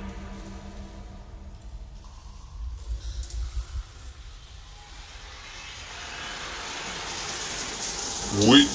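Quiet breakdown in an electronic techno track: the pitched synth parts fade out and a few low bass thumps sound around the middle. In the last few seconds a rising noise sweep builds, getting steadily louder and brighter.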